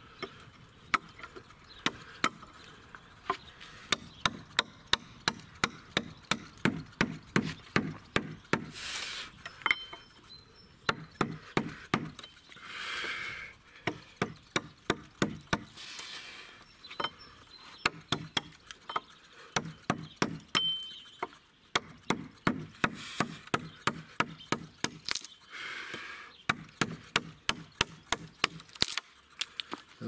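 A rubber mallet repeatedly striking the wooden handle of a woodcarving gouge, driving it into a plank: sharp knocks in quick runs of about two to three a second, broken by short pauses, with a few short noisy bursts between the runs.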